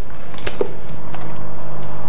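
A few light clicks from a small glass test vial and plastic test-kit parts being handled, over a steady low hum.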